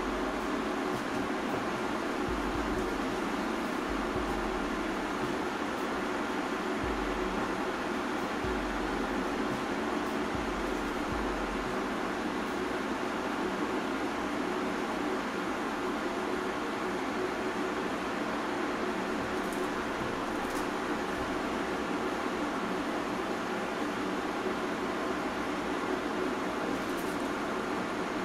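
Steady background noise of room ventilation, a fan-like hiss that does not change, with a few faint low bumps in the first twelve seconds.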